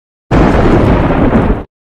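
Loud explosion-like blast sound effect: a dense rush of noise with heavy low end, lasting a bit over a second and cut off abruptly.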